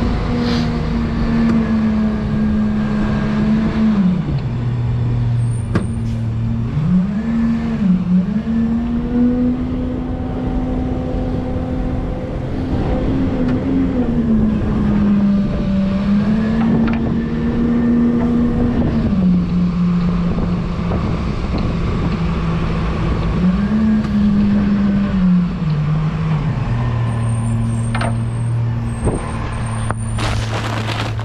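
Rear-loader garbage truck's engine running as the truck drives, its pitch rising and falling several times as it speeds up and slows, with road and wind noise. The engine settles low near the end as the truck slows.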